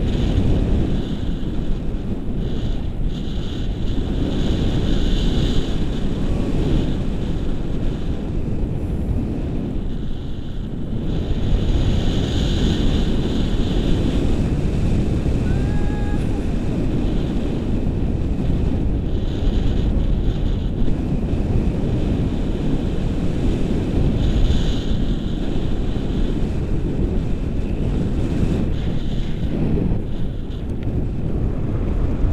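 Airflow buffeting the action camera's microphone in flight under a tandem paraglider: a loud, steady low rushing that swells and eases in gusts.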